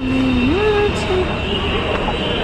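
Steady low rumble of a vehicle or road traffic, with a brief voice-like hum rising in pitch about half a second in.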